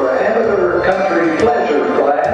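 A person talking, with music in the background.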